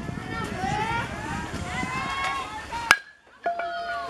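Spectators' voices talking, then about three seconds in a single sharp crack of the bat hitting a pitched baseball, the loudest sound here. A shout starts up near the end.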